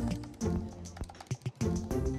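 Typing on a laptop keyboard: a quick, uneven run of key clicks over background music.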